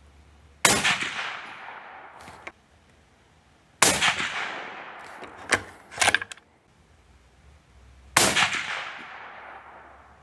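Three suppressed shots from a Mossberg Patriot bolt-action rifle in .308 Winchester, fitted with a Silencer Central Banish 30 suppressor: about half a second in, about four seconds in and about eight seconds in. Each is a sharp crack followed by a ringing tail of about two seconds. Between the second and third shots the bolt is worked with a few quick metallic clicks.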